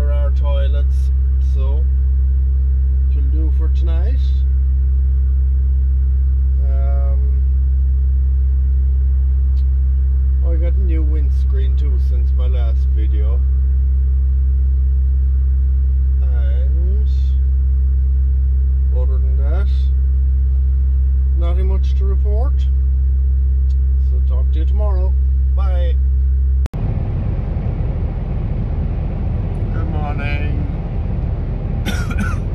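Steady low drone of a refrigerated trailer's fridge unit running beside the parked lorry, with a man's voice over it at times. About 27 seconds in the sound cuts suddenly to the rumble and road noise of the lorry driving on a motorway, heard from the cab.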